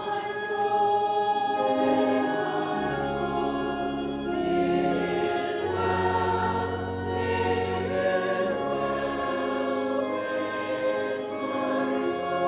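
A church congregation singing a hymn together, accompanied by an organ holding long sustained chords.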